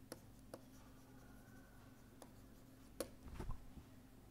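Faint taps and scratches of a stylus handwriting on a pen tablet: a few scattered clicks and a louder bump about three seconds in, over a low steady hum.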